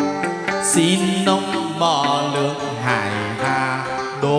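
Chầu văn ritual music: an ensemble playing a wavering melody over lower notes, with frequent sharp percussive clicks.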